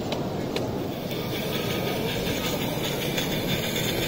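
A 16mm-scale narrow gauge model locomotive running on layout track, with a couple of sharp clicks in the first second, over the steady hubbub of a busy exhibition hall.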